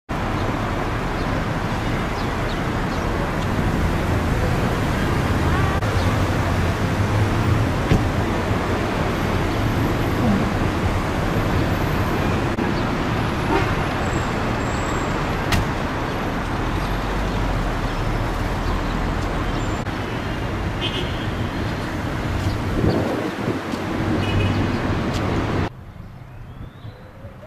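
Steady outdoor street noise of road traffic with a low rumble, cutting off suddenly near the end.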